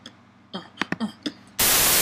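A few short mouth-percussion pops and clicks (beatboxing), then about one and a half seconds in, a loud burst of TV static hiss cuts in suddenly and holds steady.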